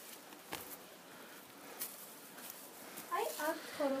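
A few soft, scattered crunches and clicks of footsteps on gravel and dry leaf litter over a quiet background. A person starts speaking about three seconds in.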